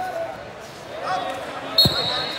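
Faint voices, then a single sharp slap on the wrestling mat near the end, most likely the referee's hand striking the mat to signal a pin.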